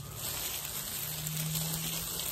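Steady rustle of a gloved hand raking hair dye through dry curly hair, over a faint low hum.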